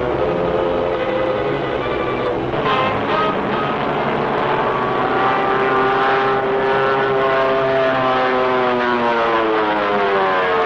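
Multi-engine propeller bomber droning in flight, a steady engine noise with stacked tones. In the second half its pitch bends downward as it passes, and the drone picks up again near the end.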